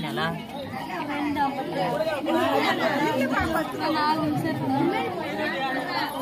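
Several people talking at once: a group's overlapping chatter.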